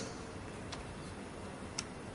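Two sharp clicks about a second apart, the second louder, from a laptop being worked to advance a presentation slide, over faint room tone of a large hall.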